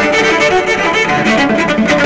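Cello played with the bow in a quick passage of changing notes.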